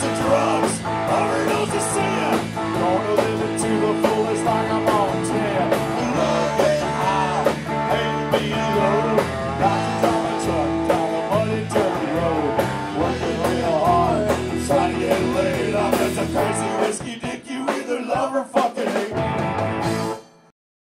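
Live bar band with electric guitars, bass and drums playing an outlaw-country punk-rock song, loud and full. About three-quarters of the way through, the bass drops out and the music breaks into scattered final hits.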